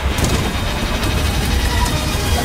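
Action-film sound effects of a helicopter crashing: dense, loud noise with a heavy deep low end and a few sharp hits.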